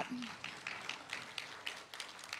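Audience applauding: many hands clapping at once, fairly soft and dying away toward the end.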